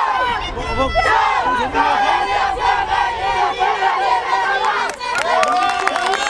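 A girls' football team shouting a team cheer together in a huddle, many voices at once, loudest from about a second in and thinning out to a few voices near the end.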